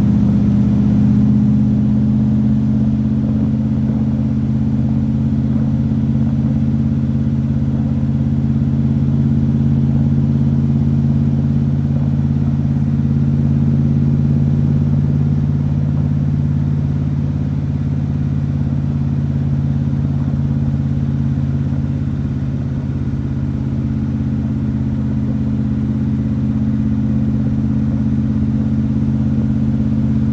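1974 Chevrolet Corvette's V8 engine running steadily at cruising speed with no revving, heard from the open cockpit with the top off. The owner says it runs rough in the cold, with the engine not yet up to temperature.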